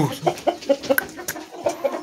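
Rooster clucking softly in short, scattered calls, with a few sharp clicks about halfway through.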